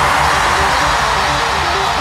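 Instrumental music from a Hindi pop song with no singing: a noisy swell that slowly fades over a repeating low bass line.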